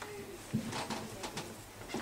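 A handheld microphone being handled and raised to the mouth, with soft clicks and a few short, low hums from a man about to speak.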